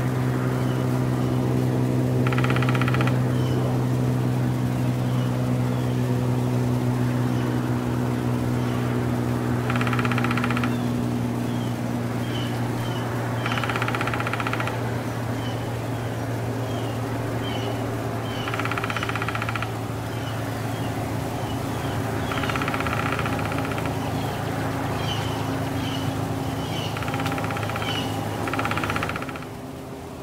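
A woodpecker drumming in short bursts of rapid taps, each about a second long, seven bursts several seconds apart, with short high call notes scattered between them. A steady low mechanical hum runs underneath and stops just before the end.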